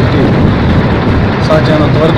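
A man speaking into press microphones, with a constant low background rumble under his voice.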